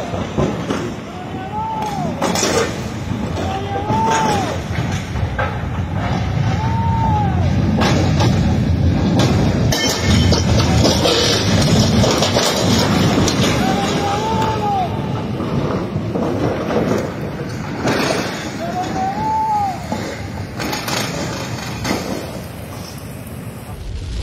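Floodwater rushing across a road in heavy hurricane rain, a loud steady roar of water and rain, with wind knocking on the microphone now and then.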